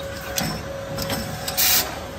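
A beer bottle filling and capping machine running, with steady mechanical noise and clicks. About one and a half seconds in comes a short, loud hiss of escaping gas as the machine cycles.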